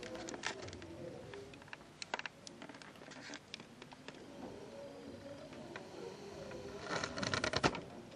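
Quiet hall ambience: scattered small clicks, rustles and shuffling with faint low murmuring, and a denser run of louder clicks and knocks near the end.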